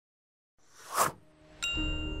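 Dead silence, then an edited whoosh sound effect that swells to a peak about halfway through and fades. Near the end a bright struck chime rings on, opening a short logo jingle.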